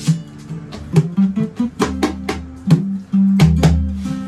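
Music on a plucked string instrument: a quick run of picked notes over ringing low notes.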